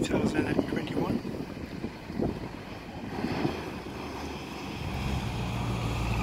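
Outdoor wind on the microphone with indistinct voices in the first half. A steady low engine hum builds toward the end.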